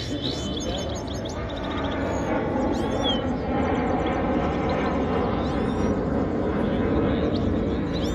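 Steady background chatter of a crowd, with three brief, high, gliding calls from caged Himalayan goldfinches spread through it.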